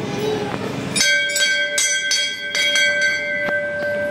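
Temple bell struck repeatedly, about two to three strikes a second, starting about a second in, its ringing tone carrying on between strikes.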